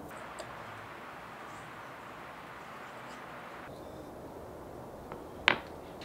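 Quiet workshop room tone, a steady low hiss, with one sharp tap near the end, as of a small wooden part handled on the bench.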